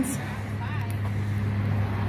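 Steady low outdoor hum, with a brief faint voice about three quarters of a second in.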